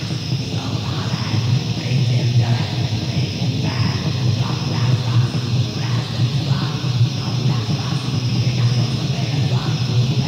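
Raw black metal from a 1995 demo tape: a band playing a dense, unbroken wall of distorted, lo-fi sound.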